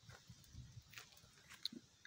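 Near silence: faint outdoor background, with a soft click about a second in and a brief high squeak near the end.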